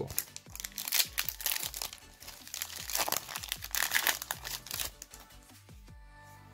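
Foil Yu-Gi-Oh booster pack wrapper crinkling and crackling as a pack is pulled from the display box and torn open, the rustling dying away near the end.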